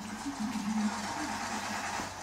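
A vehicle engine idling steadily, with a wavering low hum.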